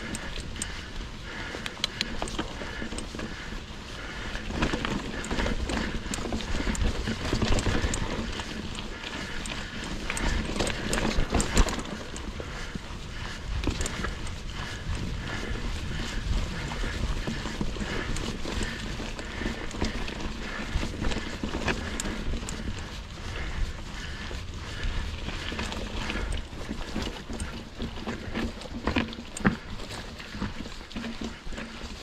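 Mongoose Ledge X1 full-suspension mountain bike ridden over a rough dirt and rock trail: tyres rolling and crunching on the ground, with the chain and frame rattling and clattering over bumps, busiest for a stretch early on. A low rumble of wind on the camera microphone runs underneath.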